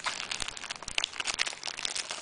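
Thin clear plastic wrapping crinkling and crackling as a seal sticker is peeled off and the wrapper is pulled open, with a quick run of small irregular crackles.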